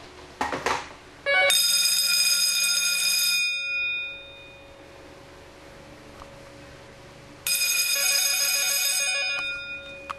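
Electric fire bells, driven through a Wheelock KS-16301 phone ring relay, ringing in two bursts of about two seconds each, some six seconds apart: the on-off cadence of an incoming telephone ring.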